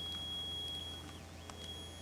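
A Guard Bunny RFID-jammer prototype sounding a thin, steady high-pitched beep, broken briefly just past the middle and then resuming. The tone signals that the device is soaking up a reader's RFID field, so you know your tags are being read.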